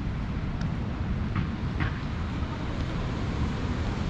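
Steady low rumble of wind buffeting the camera microphone, mixed with surf from the sea. Two faint short high sounds come about a second and a half in.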